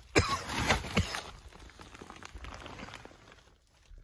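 Scuffing and rustling of a person crawling over a crawl-space floor, with a few louder scrapes in the first second before it fades away.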